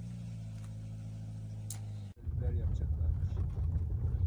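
A steady low engine hum for about two seconds. It cuts off suddenly, and a louder, rougher rumble follows: a car engine and its tyres on a dirt road, heard from inside the cabin.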